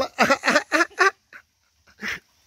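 A dog giving a quick run of about five short vocal sounds in the first second, then falling quiet.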